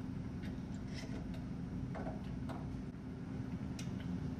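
Faint, scattered clicks and light clinks of small steel parts being handled during assembly of a flex joint (ball, washer, race and bolts), about half a dozen over four seconds, over a steady low hum.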